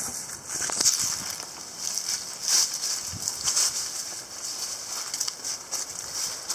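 Irregular crunching and rustling of dry leaf litter and wood-chip mulch underfoot as a person walks, with leaves of low branches brushing past.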